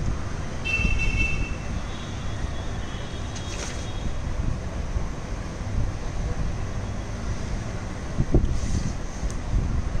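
Steady low background rumble with no speech, a brief high-pitched tone about a second in and a soft thump a little after eight seconds.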